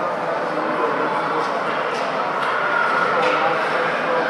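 Indistinct overlapping voices and calls of children and adults filling an indoor ice rink, with a few light clacks from hockey sticks and skates on the ice.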